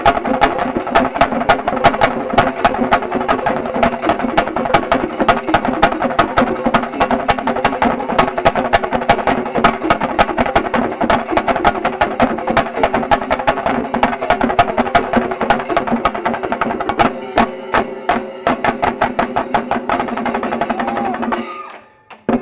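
Shinkarimelam ensemble of chenda drums beaten with sticks, playing a dense, fast rhythm of strikes. The strokes thin out to more separated beats a few seconds before the end, and then the sound cuts off suddenly.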